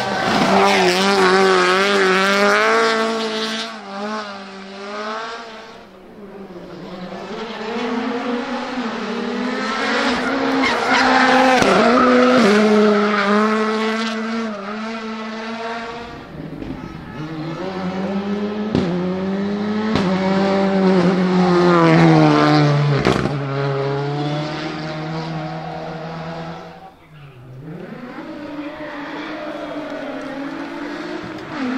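Rally car engines revving hard as several cars slide through a corner one after another, pitch rising and falling with gear changes and throttle lifts, with tyre squeal from the powerslides. The first to pass is a Ford Escort Mk2 rally car; loud passes come at the start, about ten seconds in and again after twenty seconds, and the next car's engine builds in the last few seconds.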